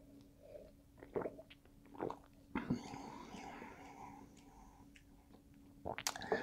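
Faint mouth sounds of a man sipping and swallowing beer: a few soft wet clicks and gulps in the first half, then a longer soft breathy sound, over a low steady hum.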